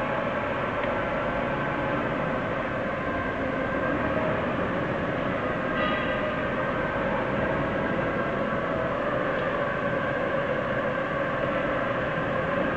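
A steady mechanical drone with several held tones running through it, unchanging in level, with one brief higher sound about six seconds in.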